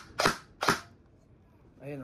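G&G ARP 556 2.0 airsoft electric rifle firing single shots into a chronograph for a velocity test: two short, sharp cracks about half a second apart in the first second.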